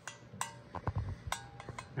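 Two light metal clinks about a second apart, each leaving a brief ringing tone, with a few faint ticks between, as a steel valve is slid up through its guide in a Porsche 997 aluminium cylinder head.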